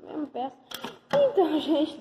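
A boy's voice speaking in short, high-pitched bursts, with a couple of sharp clicks in the first second.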